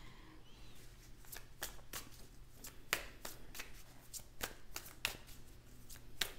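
A deck of large cards shuffled by hand: a quiet, irregular run of soft card flicks and slaps, several a second.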